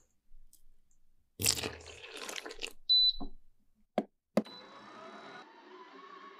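Ingredients rustle into a stainless-steel mixing bowl, followed by a short high beep and two clicks. A stand mixer's motor then starts with a rising whine and settles into a steady hum as its dough hook kneads bread dough.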